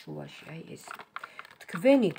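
A quick run of light clicks and taps about a second in: tarot cards being handled and set down against one another on the tabletop.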